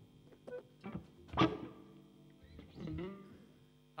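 Stringed instruments played lightly and loosely between songs: a few plucked guitar strings and notes left ringing steadily through amplification. A man says "not that" twice over it.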